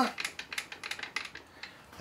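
Light, irregular metallic clicks and clinks from hands working the mill's table and vise, thinning out and fading away about a second and a half in.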